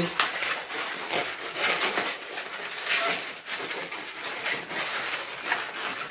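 Inflated 260 latex modelling balloon being twisted and wrapped around a pinch twist by hand: latex rubbing against latex in a run of uneven scrapes.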